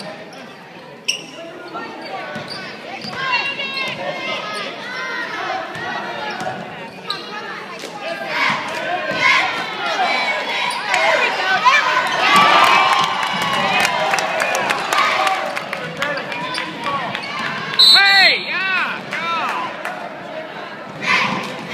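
A basketball bouncing on a hardwood gym floor during play, under a continual mix of shouts and cheers from players and spectators that swells in the middle and peaks in a burst of yelling near the end.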